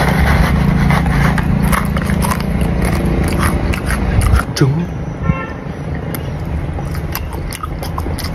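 Crunchy biting and chewing of snack food, heard as many small crisp clicks, over a steady low engine rumble from a vehicle that stops abruptly about four seconds in.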